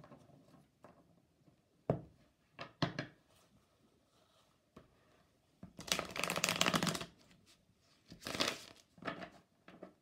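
A deck of tarot cards being shuffled by hand: a few soft taps and clicks of cards, then a dense rush of shuffling lasting about a second, starting about six seconds in, and a shorter burst about two seconds later.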